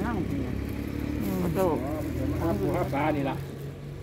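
A vehicle engine running steadily as a low hum under talking, clearer in the second half.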